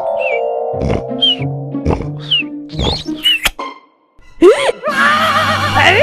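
Cartoon snoring sound effect: a loud snore about once a second, each ending in a short wavering whistle, over background music. After a brief silence, a loud wavering yell breaks in near the end.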